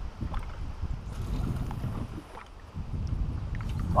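Wind buffeting the microphone in an open boat on choppy water: a steady low rumble that eases briefly a little past halfway.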